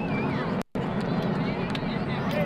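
Crowd of spectators chattering, with voices overlapping over a steady low background noise. The sound cuts out completely for a split second about two-thirds of a second in.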